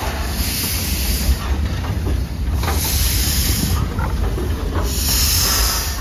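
NZR Ab class steam locomotive moving slowly, hissing steam in regular surges about every two to two and a half seconds. Heavy wind rumble on the microphone runs underneath.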